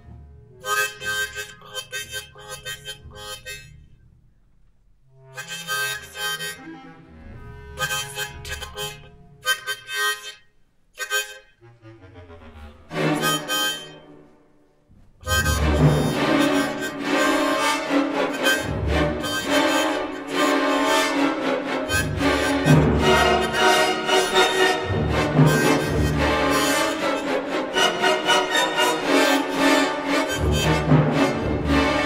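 Small Hohner harmonica played in short, broken phrases with pauses between them. About halfway through it turns into a continuous, louder and denser run of notes and chords.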